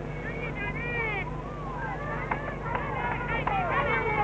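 Several shrill voices calling and shouting at once, short rising-and-falling cries overlapping one another, over a steady low hum from the old film soundtrack.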